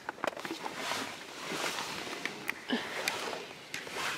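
Rustling and scattered small clicks and knocks of a handheld camera being handled and carried around inside a car.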